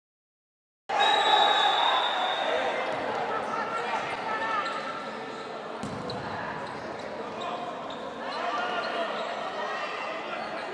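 Live sound of an indoor futsal game in an echoing gymnasium: shouting voices from players and spectators, with the ball thudding as it is kicked and bounces on the court. The sound cuts in abruptly about a second in.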